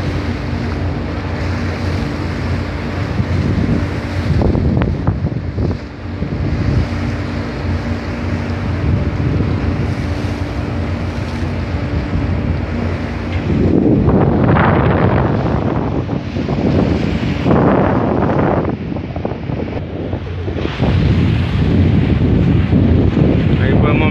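Wind buffeting the microphone over the wash of the sea and a boat engine's steady low hum. The wind gusts louder about halfway through and again near the end.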